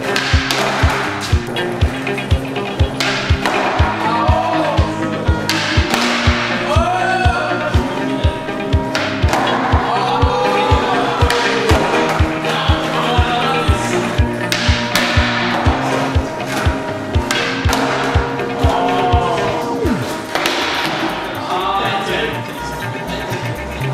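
Background music with a steady beat of about two beats a second under a gliding melody.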